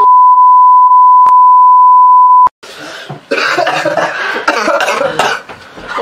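An editor's censor bleep: one steady high beep about two and a half seconds long that cuts off suddenly, followed by coughing and yelling from the men reacting to the burn of the extremely hot chip.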